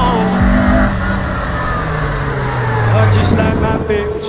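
Peugeot 106 Rallye's four-cylinder petrol engine running through a cone slalom course, its note falling steadily in pitch over about three seconds.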